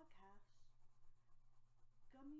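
Faint scratching of a colored pencil shading on a coloring-book page, over a steady low electrical hum. A soft voice trails off just at the start.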